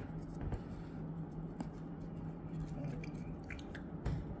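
Faint scratchy rubbing of a cotton swab scrubbing inside a vaporizer's metal heating chamber, with a few light clicks, over a low steady hum.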